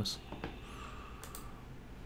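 A few faint, short computer clicks over quiet room tone.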